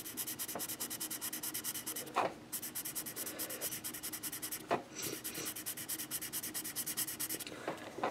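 A colouring tool scratching rapidly back and forth on paper as the patty of a drawing is filled in with dark red. It goes in three runs of quick, even strokes, with short breaks about two and about four and a half seconds in.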